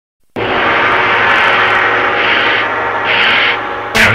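After a moment of silence, a loud, dense, sustained drone starts suddenly and holds steady, with many layered tones over a low hum: an ambient synthesizer pad or drone in a music soundtrack.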